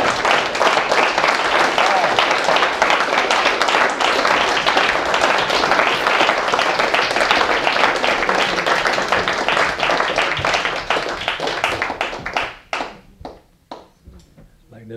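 Audience applauding, a dense patter of many hands clapping that dies away near the end to a few last separate claps.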